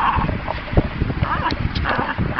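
Jack Russell terriers whining and yipping in play, with frequent low knocks and thumps between the calls.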